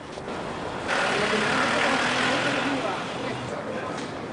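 Street traffic: a motor vehicle passes close by, its road noise swelling about a second in and easing near the end, with passers-by talking.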